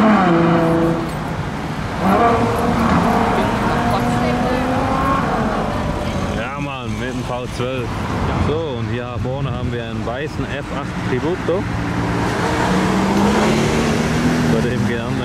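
Ferrari GTC4Lusso accelerating away: the engine note climbs, drops at an upshift about a second in, then climbs again through the next gear. Voices fill the middle, and near the end another car's engine rises as it pulls away.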